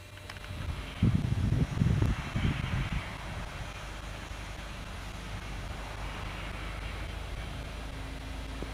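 Wind buffeting the microphone in loud, irregular gusts for about two seconds, then settling into a steady low rumble.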